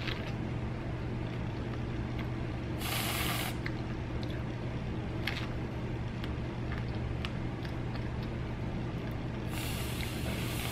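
Aerosol can of whipped cream spraying in two short hisses, about three seconds in and again near the end, between faint clicks of strawberries being chewed, over a steady low hum.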